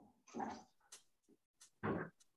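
A dog making three short, faint sounds, about half a second in, about a second in, and near the end.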